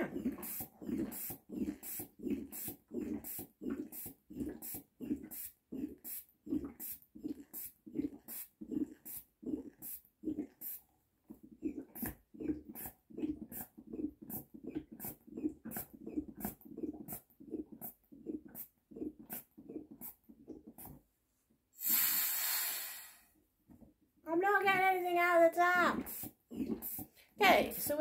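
Rubber hand-bulb air pump on a Boxio Wash water canister squeezed over and over, about two squeezes a second, pressurising the tank. The pumping stops about two-thirds of the way through, and a hiss of about a second follows, then a whining, falling tone near the end.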